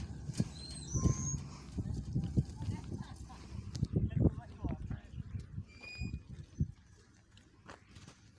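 Indistinct voices in the background with scattered knocks and thumps, and a few short bird chirps about a second in and again near six seconds.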